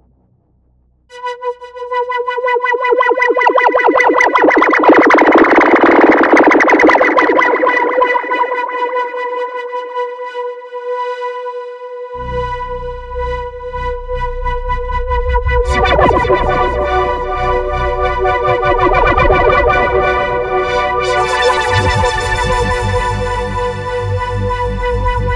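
Sunrizer software synthesizer on an iPad, played from SoundPrism Pro, with the iPad's tilt shaping its expression. It starts about a second in with a held note that swells and fades. Bass enters about halfway, and further notes and chords follow, growing brighter near the end.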